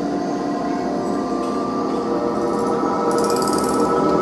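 Experimental electronic drone music played live: a dense layer of sustained, ringing tones. A higher tone joins about a second in, and a brief high hiss sounds near the end.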